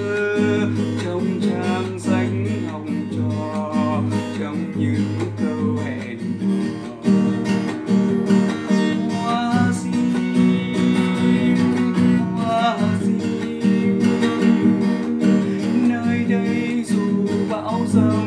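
A man singing a slow Vietnamese song to his own strummed classical (nylon-string) guitar accompaniment.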